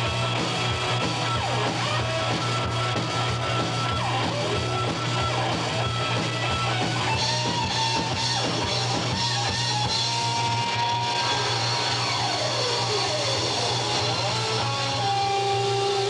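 Live rock band playing: electric guitars over bass and drums at a steady, full level, with long held notes and several sliding notes.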